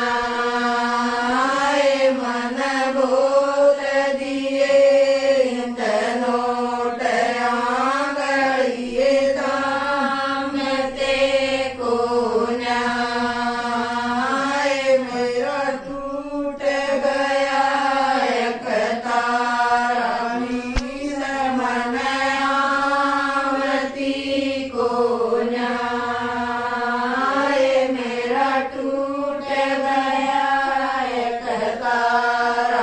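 A group of women singing a song together in unison, in a chant-like style, with the melody rising and falling and no break except a short dip about halfway through.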